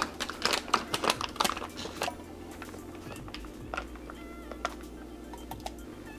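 MRE drink pouch being torn open and handled: a quick run of sharp crinkles and clicks over the first two seconds, then sparse faint ticks. Soft background music runs underneath.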